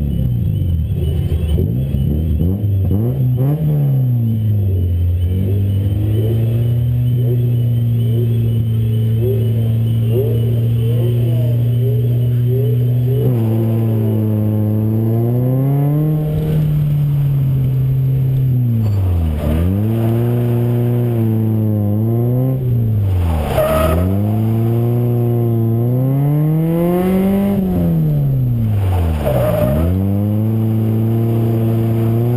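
Car engine revving hard under load. The revs hold high and steady for several seconds, then rise and fall again and again, with several sharp drops in revs in the second half.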